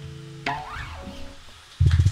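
The last chord of an acoustic guitar ringing out and fading as a song ends. About halfway through comes a brief rising-and-falling cry, and near the end a sudden loud low thump.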